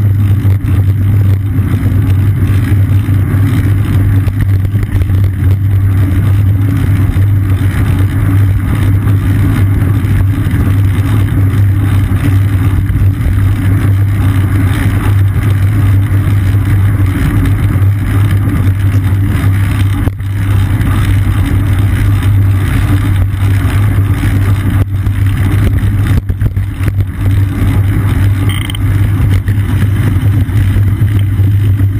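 Steady, loud rumble of wind and road vibration picked up by a seat-mounted action camera on a moving bicycle, with a few brief knocks.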